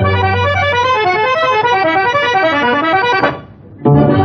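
Instrumental interlude of a 1961 Tamil film song: a quick running melody of short notes stepping up and down over a held low bass note, dropping away for about half a second near the end before the music comes back.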